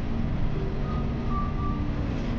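Steady low rumble of background room noise, with a few faint soft tones in the second half.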